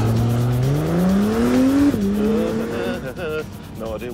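Honda NSX's twin-turbo V6 revving up through a gear: the pitch climbs for about a second, then drops sharply at the upshift about halfway in and settles.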